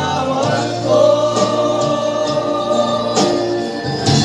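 A small group of men singing a gospel song together into a microphone, holding one long note from about a second in until near the end.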